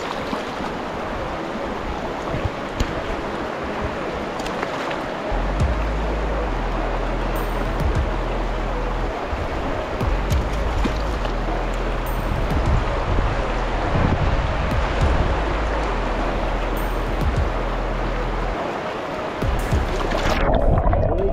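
Shallow river rushing over rocks, with background music coming in about five seconds in.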